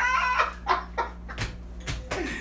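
Two men laughing hard: a high, squealing laugh right at the start, then short gasping bursts of laughter every few tenths of a second.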